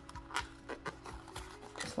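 Faint background music, with a few soft clicks and rustles as a small cardboard box is opened by hand.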